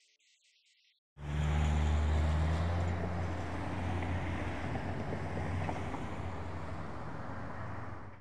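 Roadside traffic noise that starts suddenly about a second in: a steady low engine hum from passing cars over continuous road noise, loudest at first and easing slightly.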